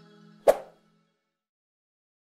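The last held notes of closing music dying away, with a single short click sound effect about half a second in, the kind laid on an animated cursor pressing a subscribe button.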